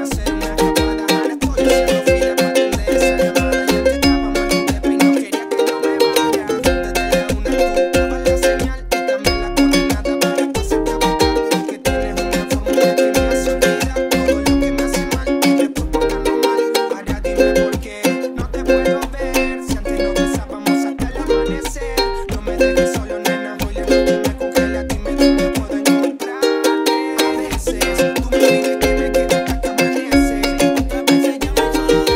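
Ukulele strummed in a reggaeton rhythm of down and up strokes with muted percussive chops, cycling through F minor, C♯ and D♯ chords.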